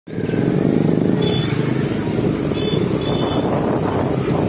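KTM Duke motorcycle's single-cylinder engine running steadily while riding at low speed, heard from the rider's seat.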